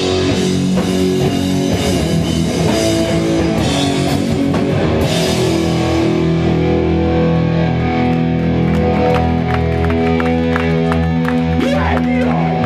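A hardcore punk band plays loud, with distorted electric guitars, bass and drums. About halfway through, the cymbal wash falls away and long held guitar chords ring over regular drum hits.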